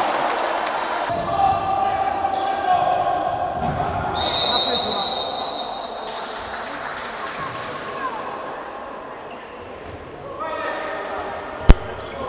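Futsal being played on the wooden floor of a sports hall: ball impacts and players' shouts echo in the hall. A short, high referee's whistle sounds about four seconds in, and a single sharp knock near the end is the loudest sound.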